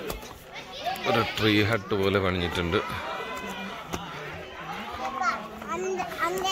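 Several people talking at once, a man's voice and higher children's voices among them, none of it clear speech.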